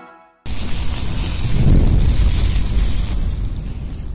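Cinematic intro sound effect: after a brief silence, a sudden loud boom about half a second in that carries on as a heavy, noisy rumble and slowly fades.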